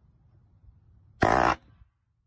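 Cordless impact driver driving a screw through a metal corner bracket into timber: one short, loud burst of rapid impacting about a second and a quarter in.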